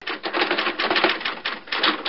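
Typewriter keys clattering in a rapid, continuous run of keystrokes, used as a sound effect.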